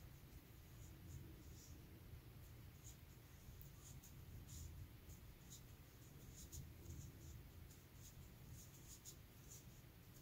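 Faint, irregular small ticks and rustles of a plastic crochet hook working cotton yarn in single crochet stitches, over a low steady room hum.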